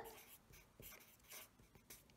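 Marker pen writing on paper: a few faint, short strokes of the tip across the sheet as a word is written out letter by letter.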